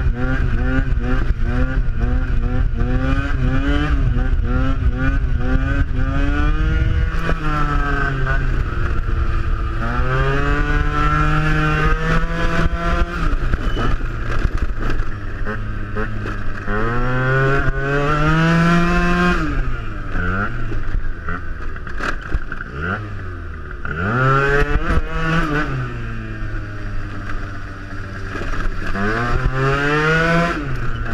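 Yamaha Aerox scooter's two-stroke engine, fitted with a Malossi MHR 70 cc kit, being ridden hard: the revs climb steeply and fall back several times as the rider pulls wheelies. Wind rumble on the mic sits under the engine.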